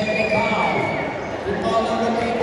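Spectators' voices and shouts in a gymnasium during a basketball game, with a basketball bouncing on the court.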